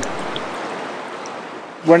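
River Tay running fast, a steady hiss of rushing water that slowly fades.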